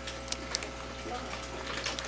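Aquarium water circulation: a steady low trickle and bubbling of water from the tank's return, over a faint pump hum, with two faint ticks in the first second.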